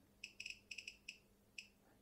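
Riden RD6006 bench power supply giving a quick series of faint, short electronic beeps as its front-panel controls are operated, a cluster of them in the first second and one more later.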